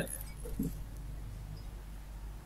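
Quiet room tone: a steady low electrical hum, with one faint short knock about half a second in.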